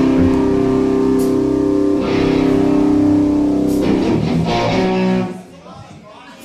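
Live rock band playing electric guitar and bass, holding chords that change about every two seconds; the music cuts off suddenly about five seconds in.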